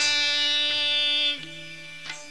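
Devotional temple kirtan: a male voice holds one long sung note over a steady drone, with a small hand-cymbal (jhanj) strike at the start. The note stops about two-thirds of the way through, leaving the quieter drone.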